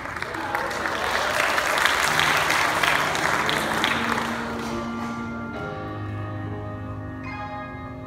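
Audience applause that swells, then fades out over the first five seconds, as the music of the projected video starts underneath: slow, held chords that change in steps and carry on alone to the end.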